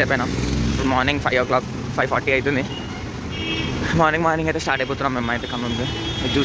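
Mostly speech, over a steady low rumble of city road traffic, with a short high tone a little past the middle.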